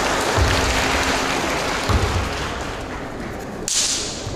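Audience applause in a large hall, with a few low thuds and a short sharp burst of sound near the end.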